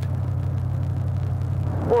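Steady low rumble of a moving car in the open air: engine and road noise, with no change in pitch.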